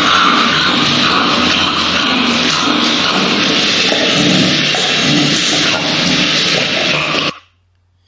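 An English bulldog with heatstroke panting hard, loud noisy breaths about twice a second: the laboured breathing of a brachycephalic dog whose temperature is above 41 °C. The sound cuts off abruptly about seven seconds in.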